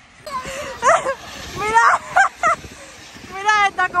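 Short exclamations and calls in women's voices, too broken for words to be made out, over a faint rush of outdoor noise.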